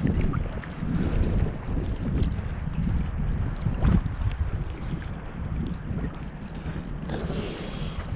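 Choppy seawater sloshing and lapping against a handheld action camera held at the water surface, with wind buffeting the microphone in an uneven rumble. A brief brighter hiss of water sounds near the end.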